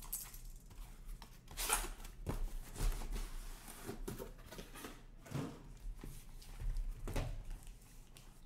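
Packing tape being ripped off cardboard boxes in several short tearing strokes, with the rustle and knock of cardboard boxes being handled.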